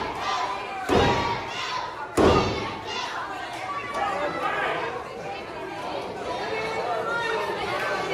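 Two heavy thumps on a wrestling ring about a second apart, then crowd chatter and calls.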